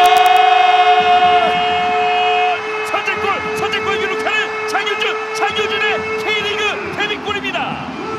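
Horns in the stadium sounding long held notes as the goal is celebrated, the higher note stopping after a couple of seconds, then a quick run of short rising-and-falling notes over the lower held note.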